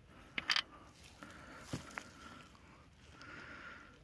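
Faint handling noise: a few soft clicks and rustles as a knit sleeve and gloved hand move against the phone.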